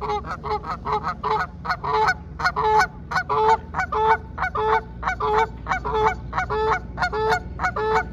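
A pair of Canada geese honking rapidly and without a break, about three honks a second, lower and higher calls alternating: the calling the birds keep up in the run-up to taking off.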